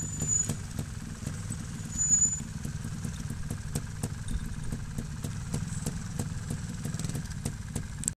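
Trials motorcycle engine running at low revs, with a quick rise in engine sound just after the start and again about two seconds in. Each rise comes with a brief high squeal.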